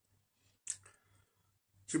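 A single short click about two-thirds of a second in, in a pause between a man's sentences, with a fainter tick just after it; his voice comes back in near the end.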